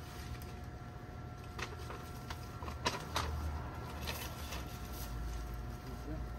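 Rustling and crackling of dry plant stalks being handled, cut and pulled, with scattered sharp snaps, the loudest pair about three seconds in, over a low steady rumble.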